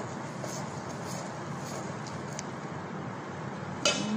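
A spoon stirring flour and water in a stainless steel mixing bowl: a few faint clicks over a steady background hiss, then a louder clatter of the spoon against the bowl at the very end.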